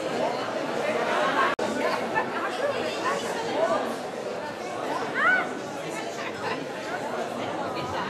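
Hubbub of many people talking at once at tables in a large hall, a dense chatter with no single voice standing out. The sound drops out for an instant about one and a half seconds in.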